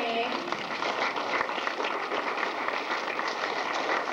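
Audience applauding steadily, with a woman's voice trailing off in the first moment.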